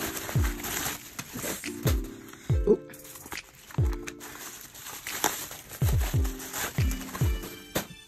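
Music with a steady beat: deep bass notes that slide down in pitch, about one to two a second, under sustained chord tones.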